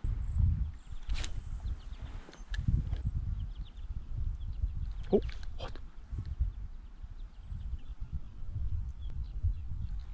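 Low, uneven rumble of noise on the microphone, with a few faint clicks. A man gives a brief surprised 'oh, what?' about five seconds in.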